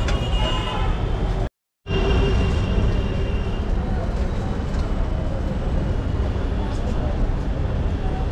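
Busy street ambience: a steady low rumble of road traffic with voices in the background. The sound drops out to silence briefly about a second and a half in.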